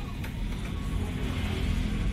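Steady low background rumble with a faint even hiss, no clear single event standing out.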